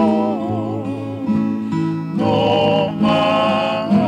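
A Tongan kalapu string-band song: voices singing with vibrato over acoustic guitar accompaniment and a bass line.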